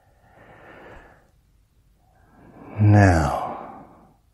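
A man breathing audibly: a soft breath in, then about two seconds in a long out-breath that turns into a voiced sigh, falling in pitch and fading away.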